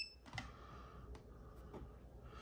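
A few faint sharp clicks, such as handling or button presses, over quiet room tone.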